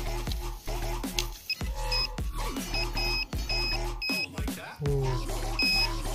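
Handheld metal-detector pinpointer giving several short beeps at one high pitch as it is probed in the soil, the signal that it is close to a small metal target. Background music plays throughout.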